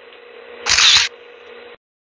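A phone's camera-shutter sound, once about three-quarters of a second in, from the Hik-Connect app's snapshot capture. It plays over a steady faint hiss and hum from the CCTV microphone's playback audio. The sound cuts off suddenly near the end.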